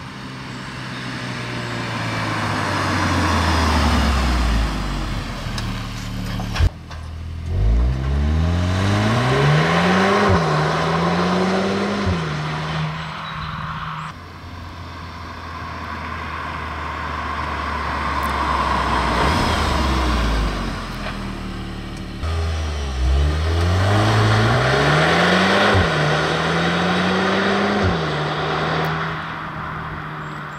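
Audi S3 Sportback's 2.0-litre turbocharged four-cylinder heard from the roadside as the car drives by. The engine note falls away about four seconds in. Twice, near eight and twenty-three seconds, the car accelerates hard, the engine pitch climbing and dropping back at each quick upshift of the 7-speed automatic.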